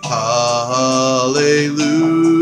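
A man's solo voice singing slow, long-held notes of a worship song without clear words, the pitch stepping to a new note about a second and a half in.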